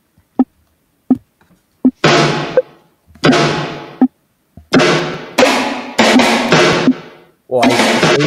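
Chopped sample hits and drum sounds triggered on a sampler app while a beat is built: a few short clicks at first, then from about two seconds in a string of loud sample chunks, each starting sharply and fading away, some overlapping.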